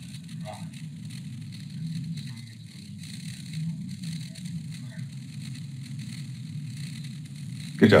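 Muffled, hissy soundtrack of old film footage, a steady low rumble with faint indistinct sound in it. A man's voice breaks in briefly at the very end.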